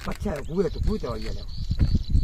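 A person's voice, a short stretch of unclear speech in the first second or so, over a steady low rumble.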